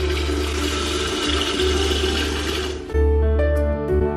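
Water running from a kitchen tap into an electric kettle over soft background music; the running water cuts off abruptly a little under three seconds in, leaving the music alone.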